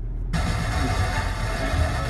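Car radio stepped up one FM channel: the sound cuts out for a moment as the tuner changes frequency, then another station's programme comes in.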